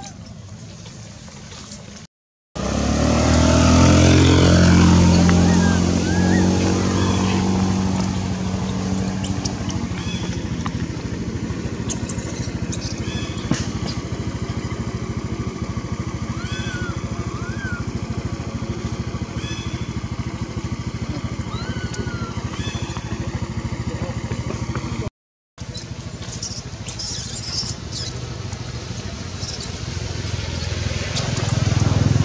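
A vehicle engine running close by, loudest a few seconds in and then settling into a steadier, quieter hum. A few short, high chirps sound over it.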